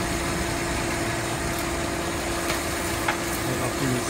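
Electric blower running steadily with an even hum and the rush of air it forces into a charcoal forge. A single light click comes about three seconds in.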